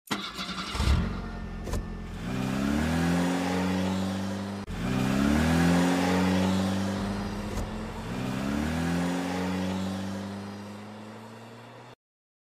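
An engine revving up three times, each time climbing in pitch and then holding steady, with a few sharp clicks in the first two seconds; it fades away near the end.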